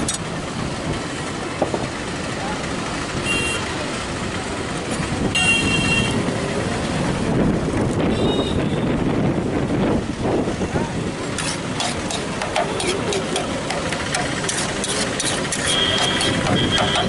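Busy roadside street sound: background chatter and traffic with a few short horn toots. From about eleven seconds in comes a run of quick clicks and scrapes from a metal utensil working food on a large metal cooking pan.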